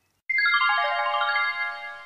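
Short musical sting: a quick descending run of ringing notes, each held so they pile up into a sustained chord that fades out near the end, marking the break between two podcast entries.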